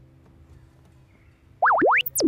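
The last chord of a Yamaha acoustic guitar ringing out and fading away. About one and a half seconds in, a loud electronic logo sting cuts in with fast rising pitch sweeps.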